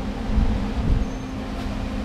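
A steady low mechanical hum, as from a running motor, under an uneven low rumble like wind on the microphone.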